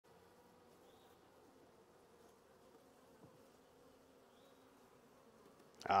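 Honeybees on the frames of an open nucleus colony, humming faintly and steadily.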